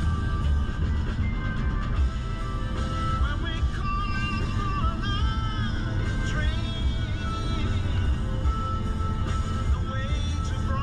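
Music playing, with a melodic line that bends up and down through the middle, over the steady low rumble of a car driving at highway speed.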